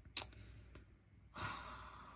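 A single sharp click, then a person's sigh: a breathy exhale starting about a second and a half in and trailing off.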